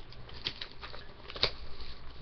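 Hands opening a sealed Crown Royale hockey card box: irregular scratching and rustling of cardboard and plastic wrapper, with a sharp snap about one and a half seconds in.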